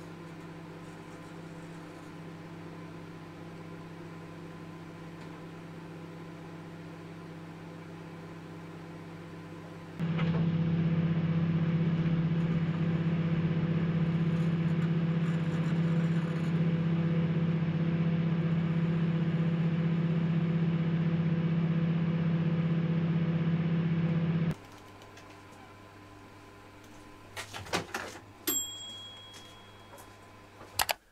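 Microwave oven running, a steady electrical hum. About ten seconds in it becomes much louder, picked up from inside the oven cavity, then drops back to a quieter hum about 24 seconds in. Near the end come a few sharp clicks and a short high tone.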